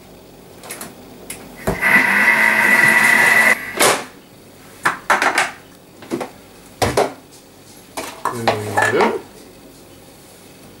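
A Thermomix TM31 mixing at speed 3 for about two seconds, a steady whine over a rushing noise, which cuts off abruptly. Then several sharp clicks and knocks as the mixer's lid is unlocked and lifted off.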